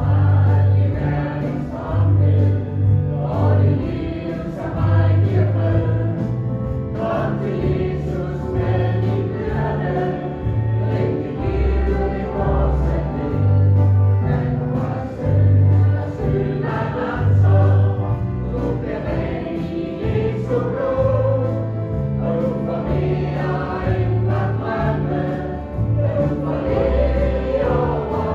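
Gospel song sung by a choir over instrumental accompaniment, with a steady, repeating bass line under the voices.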